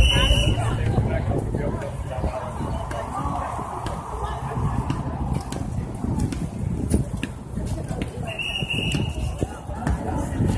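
Busy street ambience: crowd voices and traffic noise. Two short, high-pitched beep-like tones sound, one at the very start and one near the end.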